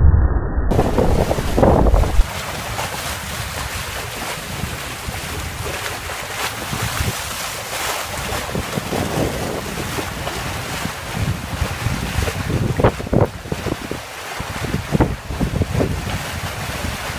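Wind buffeting the microphone and water rushing past the hull of a sailboat under way at speed. The rumble of the wind is heaviest in the first couple of seconds, and there are irregular splashes and gusts near the end.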